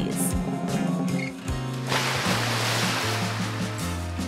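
Water gushing out of a glass lifted off an upside-down pour and splashing across a tabletop, starting about two seconds in and lasting about two seconds, over background music.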